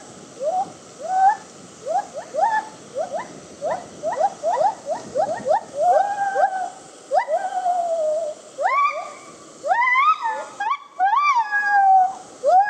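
Gibbon singing: a series of whooping calls that each rise in pitch. In the middle they quicken into a rapid run of short upward notes, then turn into longer held notes, and near the end they climb higher.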